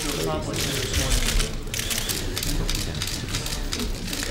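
Many press cameras' shutters clicking fast and overlapping, a steady crackle of clicks, with a brief voice near the start.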